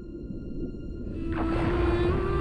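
Trailer score over a low underwater rumble. About a second and a quarter in, a shimmering swell rises and a long held note comes back in.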